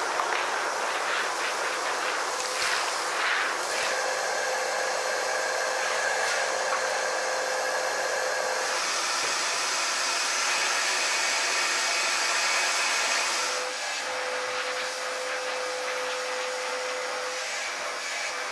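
A canister shop vacuum runs steadily, sucking up dust and cobwebs from the shed floor. Its tone shifts slightly a couple of times as the nozzle is moved.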